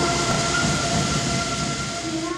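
Marinera norteña band music played loud in a sports hall and recorded with heavy distortion: a few held notes over a dense wash of noise, slowly getting quieter.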